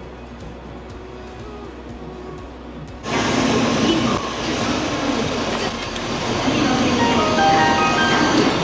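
Shinkansen platform sound beside a standing train: fairly quiet for about three seconds, then a sudden jump to a loud, steady rushing noise. Near the end an electronic chime melody of short stepped tones starts up.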